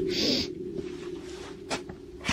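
A short, strange screech of unexplained origin, a quick gliding cry with a hiss, just after the start, over a steady low hum, followed by a couple of faint clicks.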